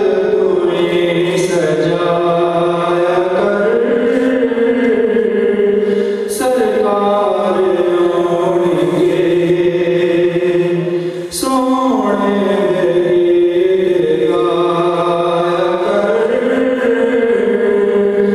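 A man's unaccompanied Islamic devotional chant (a naat) sung through a microphone: long, ornamented held notes in drawn-out phrases, a new phrase starting about six and eleven seconds in, over a steady low drone.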